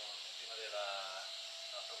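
A person talking in short phrases over a steady background hiss.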